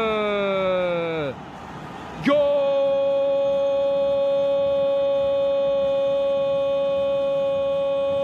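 A male football commentator's long, drawn-out goal shout. His voice slides down in pitch and trails off, then after a brief gap of crowd-like noise a new shout starts sharply and is held on one high, steady note for about six seconds.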